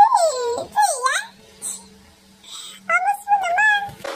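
Shih Tzu puppy whimpering: high, wavering whines that slide down and back up in pitch over the first second or so, then, after a pause, a steadier whine near the end.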